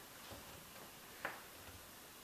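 Quiet room with a single light, sharp tap about a second and a quarter in, and a few fainter soft knocks: a cat's paw stepping onto a plastic baby bathtub.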